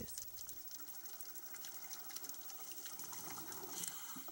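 Faint underwater ambience: a steady watery hiss scattered with fine crackling clicks.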